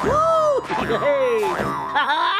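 Cartoon spring "boing" sound effects for a bouncing character, about two springy bounces, each a pitch that arches up and falls away.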